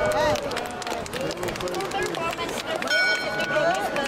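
A bell of the Prague astronomical clock strikes once about three seconds in and rings on for about a second, over the chatter of a crowd.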